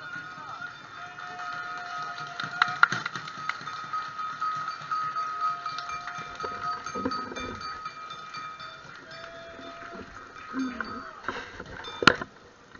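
Live music: one long high note held for about eleven seconds, with a lower line of shorter notes coming and going beneath it. A loud sharp strike comes right at the end.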